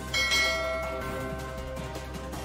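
A single bright notification-bell chime sound effect rings just after the start and fades out within about a second, over steady background music.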